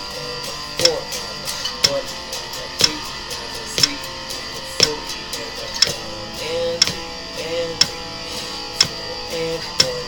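Electric guitar strummed in a steady rhythmic strum-pattern exercise over a metronome clicking about once a second, the clicks the loudest sound. The exercise switches between straight eighth notes, triplets and sixteenth notes.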